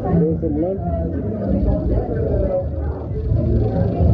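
Background chatter: several people talking at once, with no clear words, over a steady low hum.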